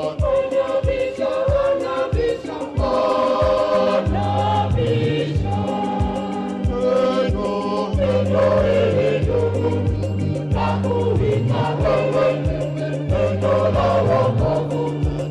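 Church choir singing a hymn, with a steady beat about twice a second and sustained low bass notes underneath.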